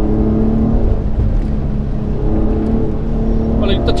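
Nissan 350GT's naturally aspirated 3.5-litre V6 heard from inside the cabin, running at a fairly steady pitch as the car drives along.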